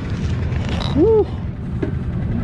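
A steady low rumble, with one short vocal sound about a second in that rises and then falls in pitch.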